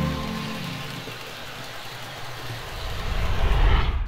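The intro jingle's music fades out into a rushing sound effect of a passing train. The effect dies down in the middle, swells again towards the end, and cuts off abruptly.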